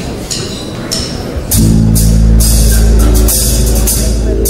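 Live jazz band starting a song: cymbal strokes from the drum kit about twice a second, then the full band comes in loud about a second and a half in, with heavy bass and sustained chords.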